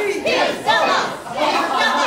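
Several people shouting at once, their raised voices loud and overlapping.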